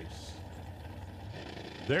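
Steady low rumble of drag race cars idling at the starting line, under faint open-air track noise.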